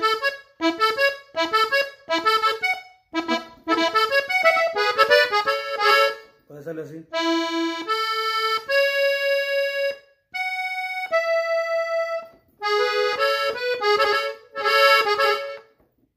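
Three-row diatonic button accordion tuned in E, playing a melody ornament in A major with the bellows pulled out. It plays quick short notes for about six seconds, then a few longer held notes, then another quick run near the end.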